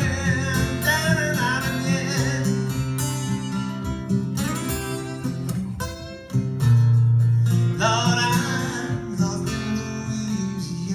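Live acoustic guitar playing a song passage, with a brief dip and then a loud strummed chord about six seconds in.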